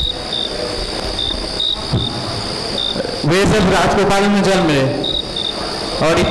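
Cricket chirping: short, high single-pitched chirps at uneven intervals through the first half, stopping while a man's voice speaks briefly in the middle, then two more chirps near the end.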